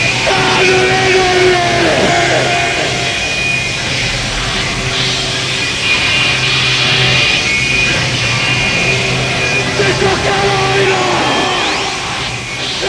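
Power electronics noise music: a dense wall of electronic noise over a steady low hum, with held tones that now and then bend down in pitch and a rising sweep near the end.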